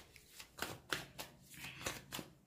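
A deck of tarot cards being shuffled by hand: a quick, irregular run of soft card snaps and slides.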